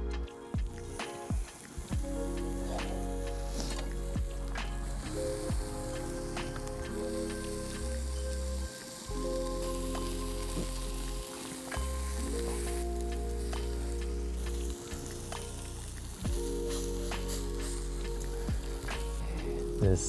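Turkey yakitori skewers sizzling over a charcoal grill, a steady hiss with scattered small pops. Background music with sustained chords plays over it and changes every few seconds.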